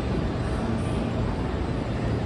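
JR West 207 series 1000 electric train pulling slowly out of the station, a steady rumble of its wheels and motors.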